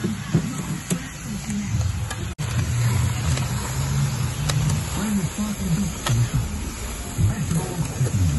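A resin mixer's motor running while its batch of resin-coated aggregate is emptied through the discharge chute into a wheelbarrow, with background music over it.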